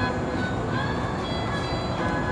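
A steady low rumble of outdoor background noise under faint music with held notes.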